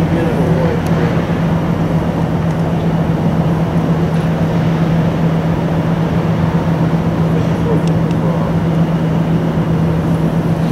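Steady running noise of a moving train heard from aboard: a constant rumble with a steady low hum under it.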